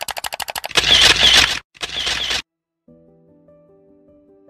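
Camera shutter sound effect: a rapid run of sharp shutter clicks, about fifteen a second, then two louder noisy bursts of a little under a second each. Faint, soft music with sustained notes comes in near the end.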